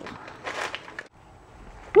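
Brief rustling handling noise about half a second in as spice jars and the camera are moved from the cabinet to the counter, then a quiet kitchen.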